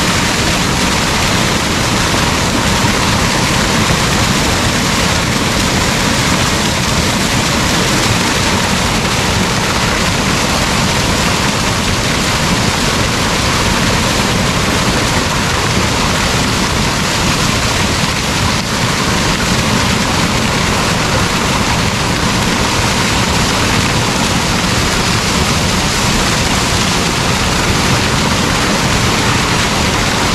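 Hot-spring waterfall pouring down a rock face close by: a loud, steady rush of falling water.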